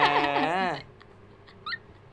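A man and a woman talking over each other with laughter, breaking off less than a second in; then quiet, with one brief high rising squeak of a voice.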